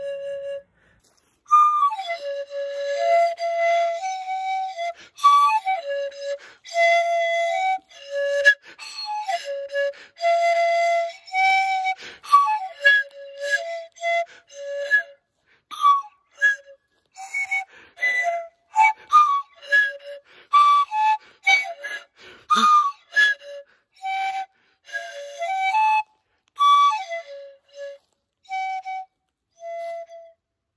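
A 3D-printed eight-tube resin pan flute playing a melody of short, breathy notes that step up and down over a narrow range, with brief pauses between phrases.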